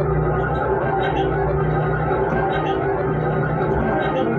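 Warr guitar played through effects in a free improvisation: dense, layered sustained tones over a steady low drone.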